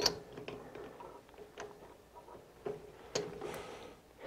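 Faint, scattered metallic clicks and taps, about half a dozen, from a cut steel socket piece being handled in a metal lathe's three-jaw chuck, over a faint steady hum.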